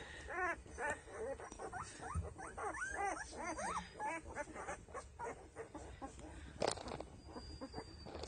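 Ten-day-old Doberman puppies squeaking and whimpering, a quick string of short high calls that each rise and fall, thinning out after about four seconds. A single sharp click comes near the end.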